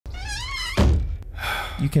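A voice with wavering pitch, broken by a heavy low thump a little under a second in, then a faint click and more voices.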